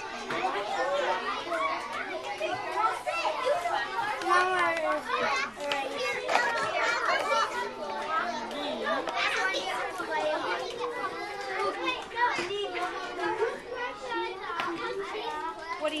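Many children's voices talking over one another: the steady chatter of a busy classroom.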